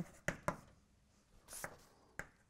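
Chalk writing on a blackboard: two sharp taps, then a short scratchy stroke about one and a half seconds in.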